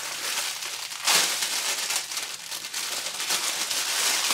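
Clear plastic packaging crinkling as it is handled and pulled open, loudest in a burst about a second in.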